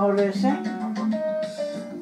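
Music with guitar, playing from a television: held melody notes over a steady bass line.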